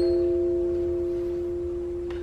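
A few clear notes from a small hand-held tuned instrument, struck or plucked just before, ring on together and slowly fade, with no new note played.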